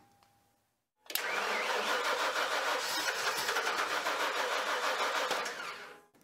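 An engine starts suddenly about a second in and runs loudly and steadily, then fades out near the end.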